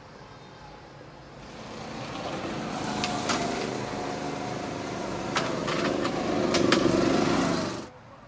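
Small go-kart engine running and growing steadily louder as it comes closer, with a few sharp clicks, then cutting off suddenly near the end.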